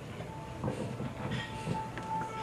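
The projected video's soundtrack starting to play over the hall's speakers: a held note comes in with a few knocks, the opening of its music.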